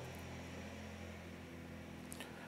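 Quiet room tone: a steady low hum with a faint hiss.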